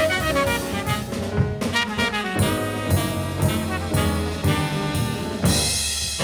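Jazz recording: brass horns playing over a drum kit.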